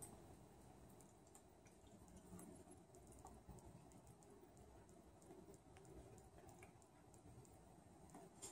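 Near silence: room tone with a few faint, scattered clicks.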